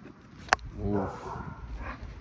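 Dogs scuffling in play on grass: a sharp click about half a second in, then a short low "oof" just before a second in, followed by rustling.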